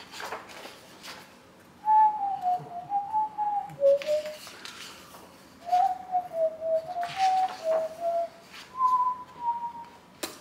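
A man whistling a shaky, wandering tune in three short phrases, the last one higher. Paper rustles as sketchbook pages are turned.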